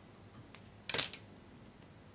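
One short, sharp clicking snap about a second in, from fly-tying tools at the head of a fly as a whip finish is completed. Otherwise only a faint steady room hum.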